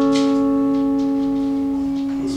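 Electric guitar chord left ringing, several notes held together and slowly fading.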